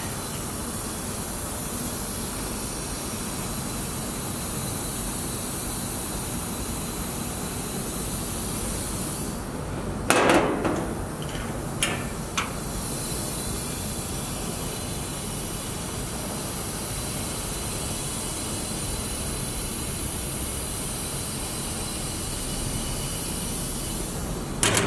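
A steady hiss throughout, with one loud metallic clunk about ten seconds in and two lighter clicks soon after, from the lever latch and sheet-metal access door of a Timesaver wide belt sander being opened.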